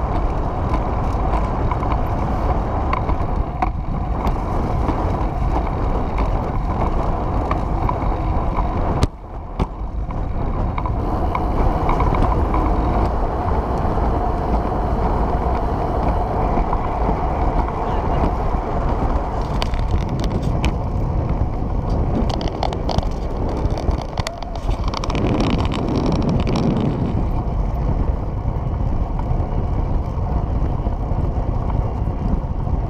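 Steady rolling noise of a recumbent trike moving along a concrete bike path, mixed with wind rushing over the trike-mounted camera's microphone. The sound drops out briefly about nine seconds in.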